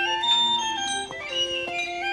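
Music: a small wooden pipe playing a lively melody, stepping from note to note over held accompanying notes, with a few light taps.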